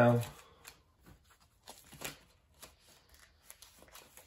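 Plastic trading-card binder sleeve pages being turned by hand: faint crinkling rustles of the plastic, with a slightly louder rustle about two seconds in.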